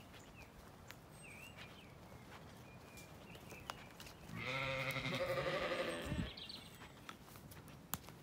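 A Zwartbles sheep giving one long, wavering bleat of about two seconds, a little past the middle.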